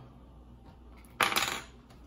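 A short clatter of hard plastic about a second in, as a plastic card holder is set down among the cards.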